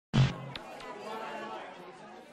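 A short loud sound right at the start, then faint background chatter of several voices.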